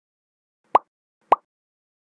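Two short cartoon-style pop sound effects about half a second apart, each with a quick rise in pitch, as animated end-screen buttons pop onto the screen.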